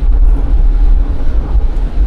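Steady low rumble of a car heard from inside the cabin, with no other event standing out.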